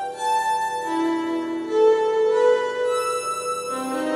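Casio electronic keyboard playing a slow melody of long held, sustained notes that step to a new pitch about every second.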